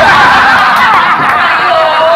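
Several men bursting into loud laughter and shouting all at once, starting suddenly and staying loud.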